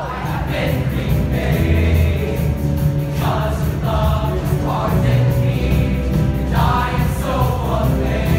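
High school show choir singing together over steady musical accompaniment.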